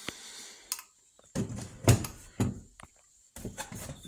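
Handling noise: a series of dull knocks and clunks as spray guns are put down and picked up, with rubbing on the phone's microphone.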